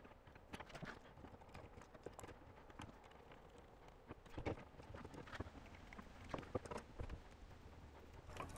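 Faint, irregular clicks and taps of hand tools and copper wire on a duplex electrical receptacle: wire strippers bending wire hooks and a screwdriver turning the terminal screws.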